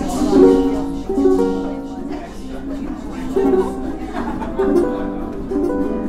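Ukuleles being strummed and plucked loosely by a roomful of players, with people talking over them.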